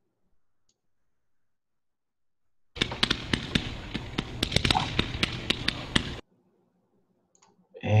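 130-shot gold glitter comet cake (multi-shot firework cake) firing in its demo recording, played back over the webinar audio: a dense, irregular run of sharp shots over a steady hiss, starting about three seconds in and cut off suddenly about three seconds later.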